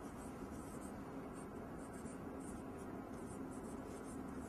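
Faint scratching of a pen writing, in short irregular strokes.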